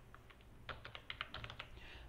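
Faint typing on a computer keyboard: a short, quick run of keystrokes, bunched about a second in, as a single word is typed.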